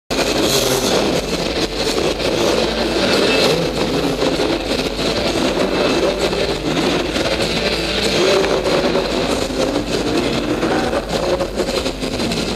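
Several off-road dirt bike engines running and revving together, loud and continuous, with the pitch wavering as the throttles open and close.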